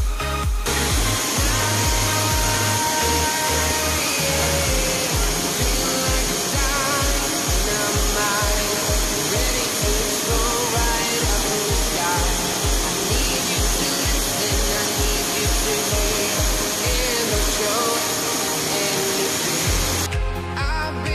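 Steady roar of a waterfall, loud rushing-water noise that cuts in just after the start, heard over background music with a regular beat.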